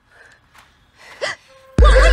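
A short gasp about a second in, over faint background sound. Near the end a sudden, much louder burst of edited music with sliding, warbling tones and heavy bass cuts in.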